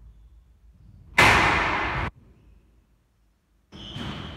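A single loud bang that rings on for about a second and then cuts off suddenly.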